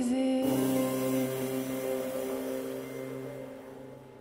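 Live band of trombone, keyboard, electric guitar and drums striking a final chord about half a second in and letting it ring out, the sound dying away steadily.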